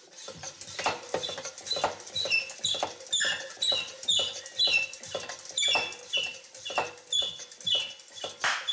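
A rhythmic run of short high-pitched squeaks, about two a second, each dropping slightly in pitch, mixed with light clicks and knocks; the first couple of seconds hold only the clicks.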